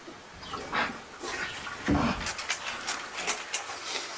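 A man's short groans, the clearest about two seconds in, followed by a run of sharp clicks and rattles near the end as a louvered wooden door is opened.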